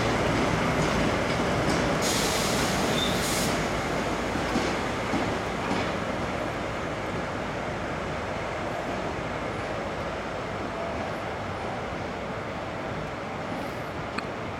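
DE10 diesel-hydraulic locomotive hauling old-style passenger coaches as it rolls slowly into the platform and slows to a stop, its engine and running noise fading steadily. A brief hiss comes about two seconds in.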